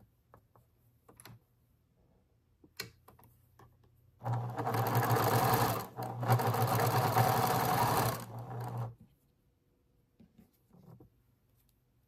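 Domestic electric sewing machine stitching a seam through cotton patchwork squares, running steadily in two spells of about two seconds each with a brief stop between and a slower, softer finish. A few light clicks from handling the fabric and machine come before and after.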